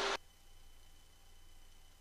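Near silence: only a faint, steady low hum.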